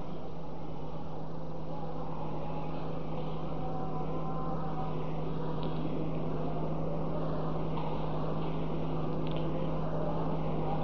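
Steady low electrical hum with background hiss, unchanging throughout, with no speech over it.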